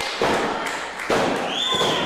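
Referee's hand slapping the wrestling ring mat twice, about a second apart, counting a pinfall that stops at two.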